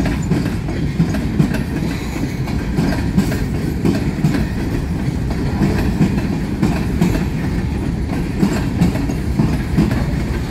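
Covered hopper freight cars rolling past close by: a steady rumble of steel wheels on rail, with short irregular knocks as the wheels cross the rail joints.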